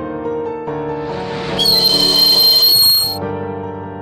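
Slow piano music, with a train sound effect laid over it: a rush of noise builds, then about one and a half seconds in a loud, shrill, high-pitched whistling screech holds for about a second and a half and cuts off suddenly.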